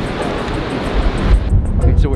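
Wind buffeting the microphone outdoors: a heavy low rumble with a hiss over it, which drops away suddenly about one and a half seconds in, with background music underneath.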